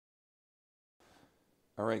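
Total silence for about a second, then faint room tone, and a man starts speaking near the end.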